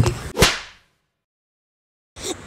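A sharp crack about half a second in, after a knock at the very start, trailing off in a brief swish. The sound then cuts to dead silence for over a second.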